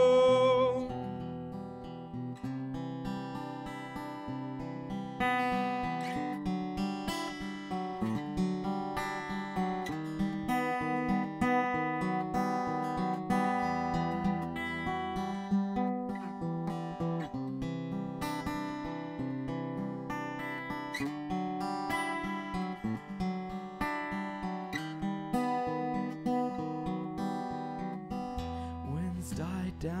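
Steel-string acoustic guitar played solo: an instrumental passage of strummed and picked chords in a steady rhythm.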